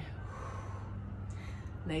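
A woman's breathing during exercise: two soft, audible breaths, with a steady low hum underneath.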